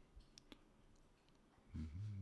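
Near silence broken by two faint computer-mouse clicks about half a second in. Near the end comes a man's low, steady hummed "mmm".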